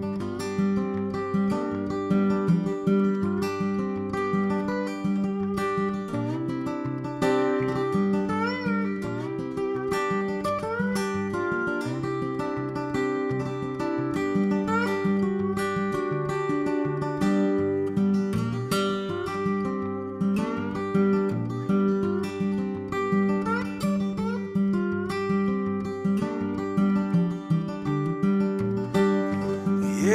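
Solo acoustic guitar playing a country-blues instrumental intro: a steady repeated bass note under a picked melody. Some notes are slid up and down in pitch with a slide.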